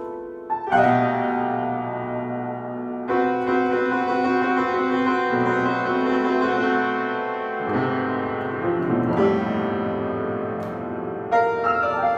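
Upright piano played solo in a free improvisation: full chords struck every few seconds and left to ring, with lines moving over them.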